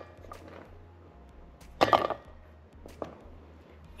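Chunks of Milky Way bar dropped into a stainless steel pot of cream: a few soft knocks and plops, the loudest about two seconds in, over a steady low hum.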